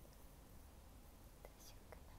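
Near silence: faint room tone, with a soft breathy sound and two faint clicks late on.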